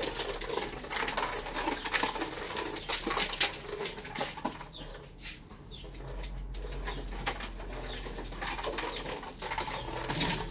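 Small plastic tricycle rattling and clicking as it rolls over paving stones, with birds chirping in the background.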